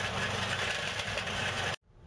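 Small gasoline engine of the Evatech 22T hybrid tracked slope mower running steadily. The sound cuts off suddenly near the end.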